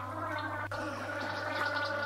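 A steady low hum, with a single faint click about two-thirds of a second in.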